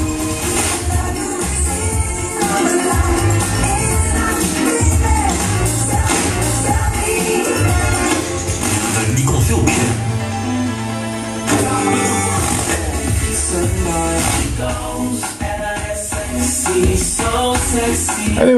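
Pop music with singing, a steady beat and heavy bass, played on a radio station through a vintage Akai AM-2650 stereo integrated amplifier and its loudspeakers.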